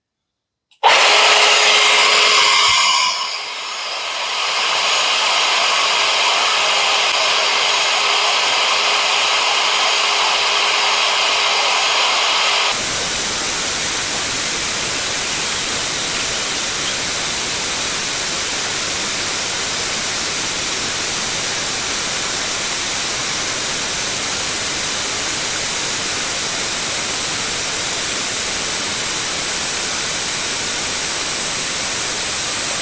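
Parkside PALP 20 A1 cordless air pump switched on about a second in and running steadily: a rush of air with a steady hum and whine in it, dipping briefly a couple of seconds later. About 13 seconds in the sound turns abruptly into an even, featureless hiss, the pump's running sound in time-lapse sped up two thousand times.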